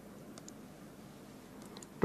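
A few faint clicks of a stylus tapping on a pen tablet, in pairs about half a second in and again near the end, over low room hiss.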